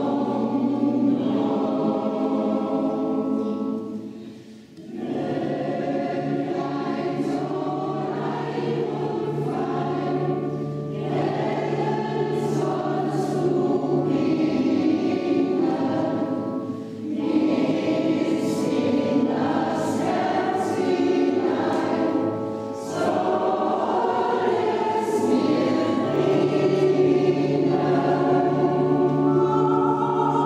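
A church choir singing in long held phrases, with a pause for breath about four to five seconds in and brief dips later on.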